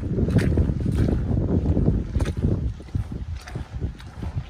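Snow boots stepping through soft mud, about one step a second, with wind rumbling on the microphone.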